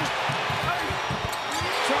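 A basketball bouncing on a hardwood court with short sneaker squeaks, over steady arena noise, as a player drives to the basket.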